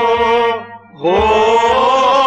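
A man singing long held notes of a Kashmiri Sufi folk song with instrumental accompaniment. One note breaks off about half a second in, and a new drawn-out "ho" swells in about a second in.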